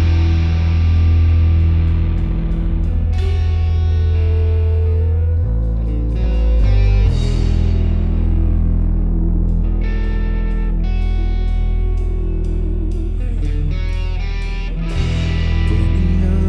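Rock band playing live: electric guitars, electric bass and a drum kit, with a strong, steady bass line and regular drum hits.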